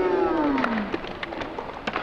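Skateboard wheels rolling on rough concrete, with scattered clacks and knocks from the board. In the first second a pitched tone slides down and fades out.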